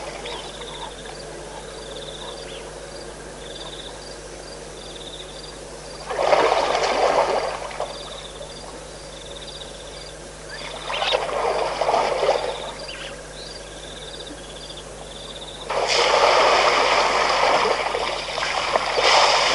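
Waterhole ambience: a short, high, buzzy call repeats about once a second, with three louder bursts of rushing, sloshing water noise, each a second or two long; the last and longest starts near the end.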